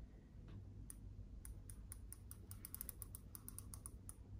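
Faint plastic clicks from a wireless steering-wheel remote control as its controls are worked, a few scattered clicks at first, then a quick run of clicks in the second half.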